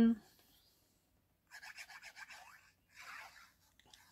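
Faint scratchy rubbing of a liquid-glue bottle's tip drawn across cardstock: a quick run of short strokes about a second and a half in, then a briefer run near the end.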